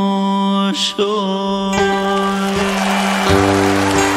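Vietnamese tân cổ (bolero and cải lương) instrumental accompaniment between sung lines. A long held note ends within the first second, and then plucked strings pick up a steady rhythm over a bass line.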